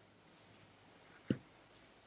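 A single short knock as a metal push-fit cooler fitting is pressed into its port on the 6HP gearbox casing, over quiet room tone.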